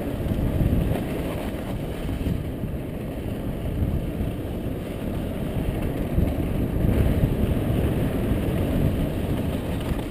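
Mountain bike descending a dirt and rock trail: steady rumble of knobby tyres on the rough ground, mixed with wind rushing over the camera microphone.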